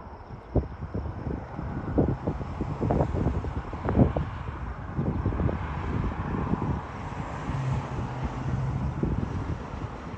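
Wind buffeting the microphone outdoors: an irregular low rumble with many short thumps, the strongest about four seconds in. A low steady hum joins in during the second half.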